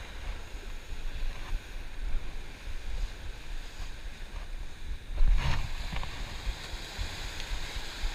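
Ocean surf washing against rocks, with wind rumbling on the microphone; a louder, brief rush of noise comes about five seconds in.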